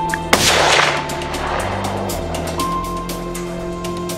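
A single rifle shot about a third of a second in, its crack trailing off in a rolling echo over about a second, with background music playing throughout.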